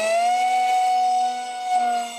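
DYS BE2208 2600 Kv brushless motor turning a Master Airscrew 6x4 three-blade prop at launch power on an RC park jet: a steady high-pitched whine with many overtones, almost like an electric ducted fan. Its pitch edges up slightly early on, then holds.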